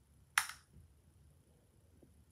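A single sharp computer-key click about half a second in, against faint room tone.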